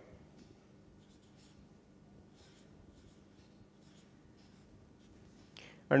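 Felt-tip marker writing on paper: a series of faint, short strokes.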